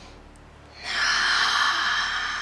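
A woman's long audible exhale of breath, starting about a second in and lasting nearly two seconds.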